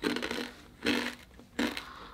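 A person chewing a crunchy snack, several short crunches about half a second to a second apart.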